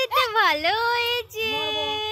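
A high-pitched voice singing long, gliding notes, with a short break about two thirds of the way through.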